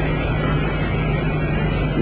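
Steady low hum under an even hiss: the background noise of the recording, heard in a pause between the sermon's sentences.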